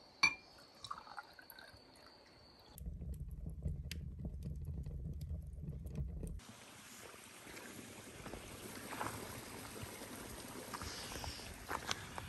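Red wine poured from a bottle into a glass, faint, with one sharp click just after it starts. A low rumble from a wood fire burning in a stove follows, then a steady outdoor hiss.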